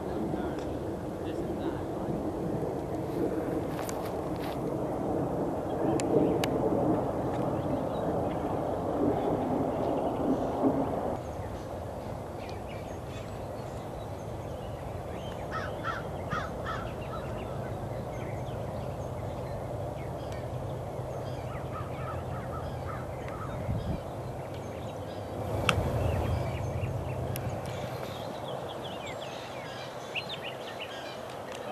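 Open-air ambience with faint, indistinct voices and a few sharp clicks. Short bird calls come in about halfway through, and the background changes abruptly about a third of the way in.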